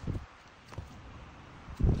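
Quiet handling sounds: gloved hands moving a printhead with silicone tubes attached, a soft rustle at first and a few light ticks, then a spoken "okay" near the end.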